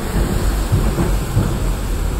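Steady rumbling noise from a vehicle in motion: wind buffeting the microphone and road rumble as it crosses a steel bridge.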